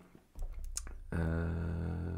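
A few soft clicks, then a man's low, steady drawn-out hesitation sound, "euh", held for just over a second.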